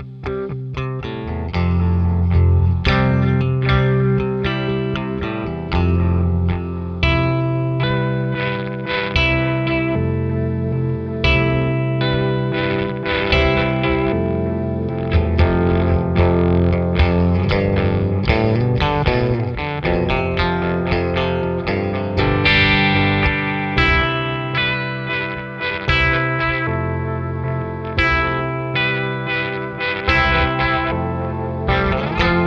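Electric guitar, a Gibson Les Paul, played through a Chase Bliss Thermae analog delay/pitch shifter into a Fender Deluxe Reverb reissue amp: a continuous melodic line with echoing delay repeats. The pedal is in step mode, so the repeats jump up a fifth on demand.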